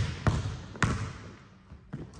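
Basketball striking a hardwood gym floor, two sharp hits about half a second apart, each ringing on in the large hall's echo before fading.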